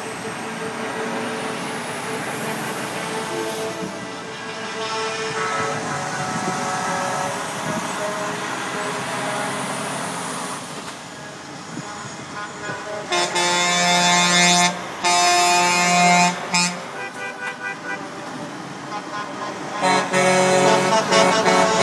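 Semi trucks passing with their diesel engines running, then two long blasts of a truck air horn about two-thirds of the way in, each about a second and a half, followed by a few short toots.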